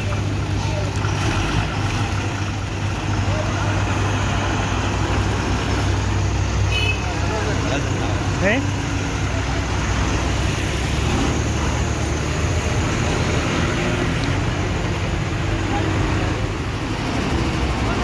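Heavy diesel dump trucks idling and creeping along in a queue, a steady low engine rumble throughout. A brief rising squeal is heard about eight and a half seconds in.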